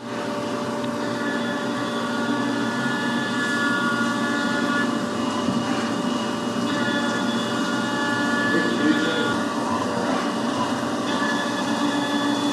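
A Tormach 770MX CNC mill's end mill cutting an aluminum workpiece held in a rotary fourth-axis chuck under flood coolant. The spindle and cutting noise start abruptly and run steadily. Several high ringing tones fade in and out over it.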